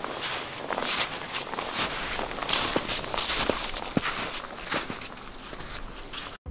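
Boots crunching through deep snow: footsteps at a walking pace, getting quieter near the end.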